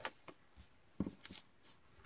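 Paper being handled and set down on a tabletop: a few light taps and rustles of scrapbook paper and card, the clearest about a second in.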